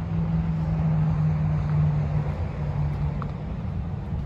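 Diesel truck engine idling, a steady low hum.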